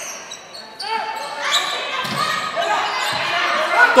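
Indoor volleyball rally in a sports hall: the ball is struck, shoes squeak on the court, and players and spectators shout, all echoing in the hall.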